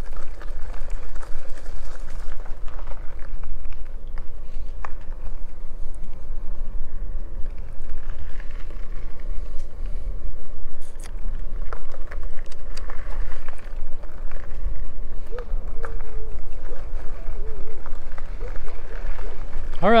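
Wind rumbling on the microphone and road noise from an e-bike riding over gravel and then pavement, with scattered small clicks and rattles.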